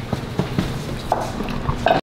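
A few light clicks and taps of cutlery and dishes, with a brief faint voice sound about a second in and again near the end.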